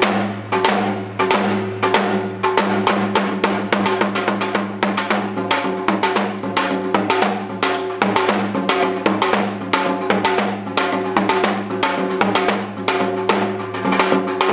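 Janggu, the Korean hourglass drum, played solo in traditional style: a rapid, dense run of strokes with a thin stick on one head and the hand on the other.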